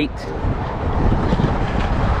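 Wind buffeting the microphone: an uneven low rumble of wind noise, with no other distinct sound standing out.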